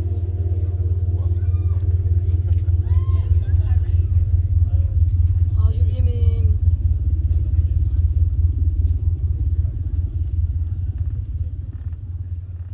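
Performance soundtrack of a deep, steady rumbling drone, with a held pitched chord fading out over the first four seconds and scattered short warbling, gliding tones above it. The whole begins to fade near the end.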